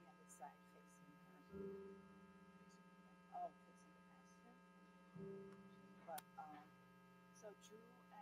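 Near silence: a steady electrical mains hum, with a few faint, brief voices now and then.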